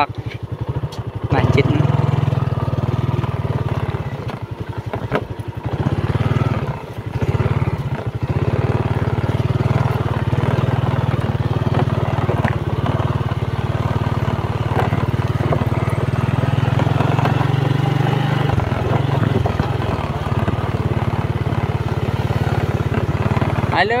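Small motorcycle engine running steadily, a loud, low, fast-pulsing hum. It eases briefly about three-quarters of the way through, then picks up again.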